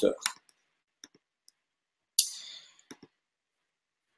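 A few soft computer-mouse clicks as the presentation slide is changed, with a short breathy rush of noise a little after two seconds in. In between, the line is silent.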